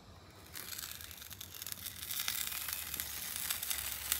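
Sizzling on a hot flat-top griddle, a fine crackle that starts about half a second in and slowly grows louder.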